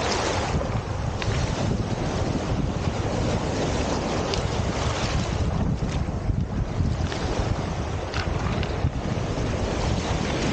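Small Lake Superior waves washing up over a cobble beach of rounded stones, a steady surf wash, with wind buffeting the microphone as a low rumble. A few faint clicks sound now and then.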